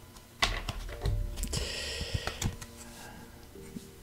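A card being drawn from a new deck of cards: light clicks and taps, with a short papery rustling slide about a second and a half in.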